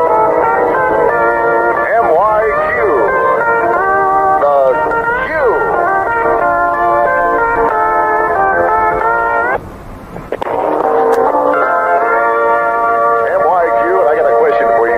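Music with guitar and sliding notes playing on a car radio, thin and lacking top end. It cuts out for about a second a little before ten seconds in, leaving only hiss, then comes back.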